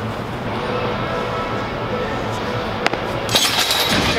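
Shoes scraping and sliding on the throwing circle as a shot-putter turns through a practice throw: a sharp click near three seconds, then a loud hissing scrape near the end as the throw finishes.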